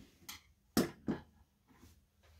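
Bail-making pliers and a brass rod set down on a tabletop: a faint tap, then two sharp knocks about a third of a second apart, near the middle.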